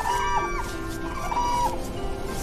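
Cranes calling over sustained background music: a few clear, held calls that rise sharply at the start and break off, one at the very start, another just after, and one more past the middle.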